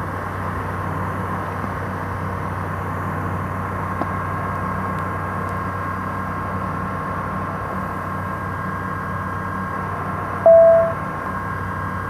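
Small plane's engine at takeoff power, a steady drone heard from inside the cockpit, with a short beep about ten and a half seconds in.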